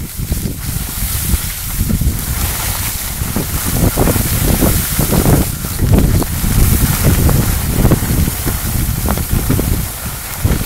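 Wind buffeting the microphone of a skier moving downhill: a loud, uneven low rumble, over the hiss of skis sliding on packed snow.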